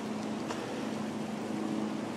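A steady low mechanical hum over even outdoor background noise, with a faint click about half a second in.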